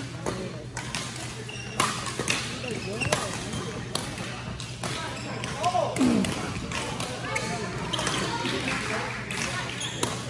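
Badminton rally: several sharp racket strikes on the shuttlecock, with people talking in the background.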